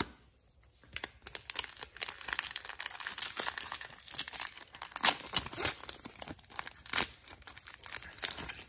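A 2009-10 SP Authentic hockey card pack being torn open by hand, its wrapper crinkling and ripping in a dense crackle that starts about a second in, with sharper rips about five and seven seconds in.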